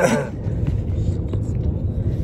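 Steady low rumble of road and engine noise inside a moving car's cabin, with short rubbing and knocking from a phone being handled close to the microphone.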